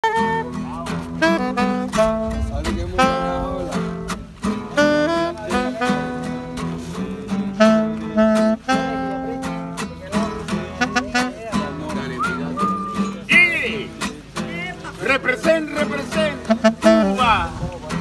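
Live alto saxophone and acoustic guitar playing together: the saxophone carries a melody of held notes over strummed guitar chords.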